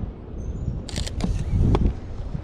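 Mirrorless camera shutter firing a quick burst of several clicks about a second in, followed by a low rumble of wind buffeting the microphone.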